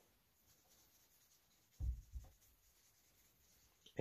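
A short scrape of a small hand tool against a leather strap on the workbench, heard once about two seconds in; otherwise near quiet.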